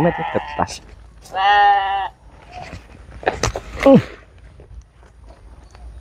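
An animal's drawn-out call about a second and a half in, lasting well under a second with a slightly wavering pitch. A shorter call with a falling pitch follows about four seconds in.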